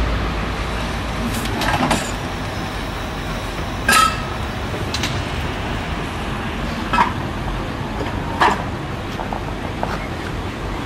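Steady street traffic noise with a handful of sharp clicks and knocks a few seconds apart, one of them a brief metallic clink.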